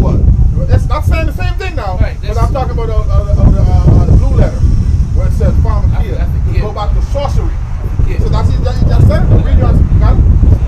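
A man's voice talking, the words unclear, over a heavy, constant low rumble.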